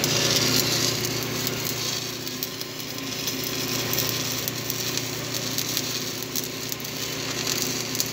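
Stick (shielded metal arc) welding: the electrode's arc crackling and sizzling steadily as a bead is run over a crack in a truck's differential housing.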